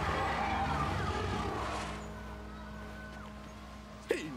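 Cartoon sound effect of water rushing and surging, loud at first and fading away over about two and a half seconds, over held low music notes.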